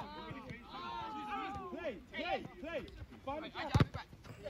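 Voices of footballers shouting and calling to each other across the pitch, fainter than nearby speech, with a single sharp knock near the end.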